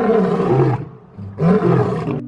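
Male lion roaring: two roars with a short break about a second in.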